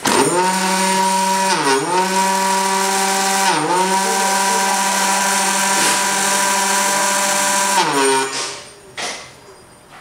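Kugoo Kirin electric scooter's rear hub motor spinning under full throttle with a loud whine that sags in pitch twice. It then winds down and stops about eight seconds in, though the throttle is still held. This uneven, noisy running is what the mechanic thinks points to a hall sensor fault.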